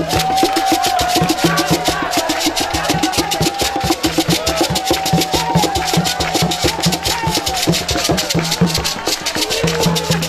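Traditional hand drumming on wooden barrel drums, a fast steady beat with percussion, under a voice singing long, wavering held notes.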